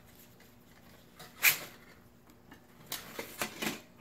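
Mesh stuff sack being handled: a short rustle about one and a half seconds in, then a few lighter rustles near the end as it is cinched and lifted.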